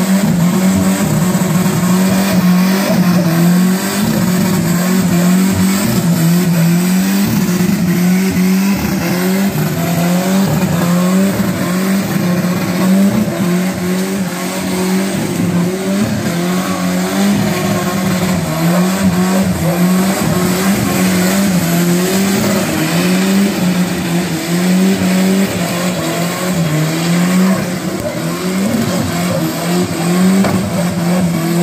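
Turbocharged, rear-wheel-drive VW Gol doing a long burnout: the engine is held high in the revs, its pitch rising and dipping over and over as the throttle is worked, over the noise of the spinning rear tyres.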